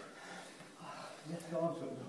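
A man's short strained vocal sound during the effort of a kettlebell Turkish get-up, in the second half, with a faint click in the middle of it.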